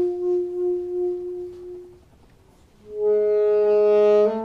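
Alto saxophone holding a long solo note that wavers in loudness and fades away. After a short pause, a new sustained note enters with a lower note beneath it.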